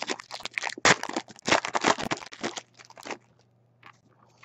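Baseball card pack wrapper crinkling and cards being handled: a quick, irregular run of crackles and clicks that stops about three seconds in.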